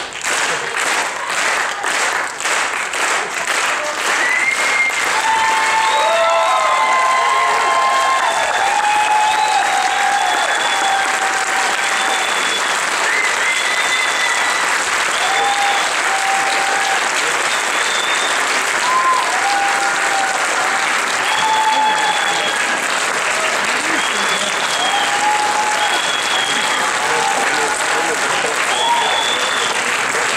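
Audience applause, in even beats for the first few seconds and then a steady clapping, with voices calling out over it again and again.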